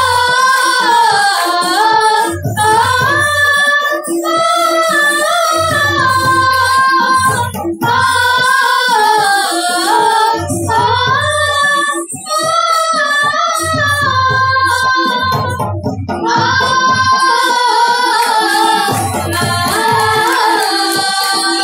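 Sambalpuri folk song: a sung melody that glides between held notes, over low drum beats that come in recurring groups every few seconds.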